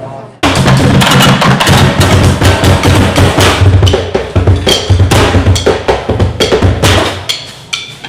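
Drumsticks beating a fast, loud rhythm on upturned metal baking pans and tins. The playing starts abruptly about half a second in and thins out near the end.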